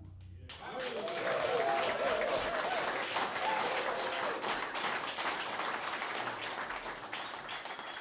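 A small club audience applauding at the end of a jazz piece: the last held note fades, and about half a second in the clapping starts and carries on steadily, with a few voices calling out over it in the first seconds.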